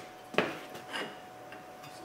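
A few light metallic clinks of a steel ratchet, extension and leverage pipe knocking against the front brake caliper bracket as they are set on the bolt, the sharpest about half a second in and a smaller one about a second in.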